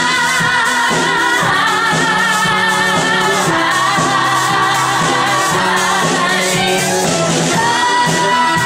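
A woman belting long held notes with vibrato over a live band, the pitch shifting a few times.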